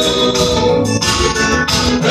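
Live church gospel band music: an electronic keyboard holding organ-like chords over a drum kit beat.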